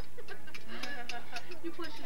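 Hammers striking thin steel rods laid on the ground, an irregular run of sharp metallic taps several times a second as the bent rods are straightened.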